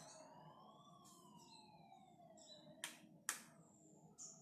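Two sharp clicks of a wall light switch being flicked, about a second apart, near the end. Before them comes a faint single whine that rises for about a second and then falls slowly.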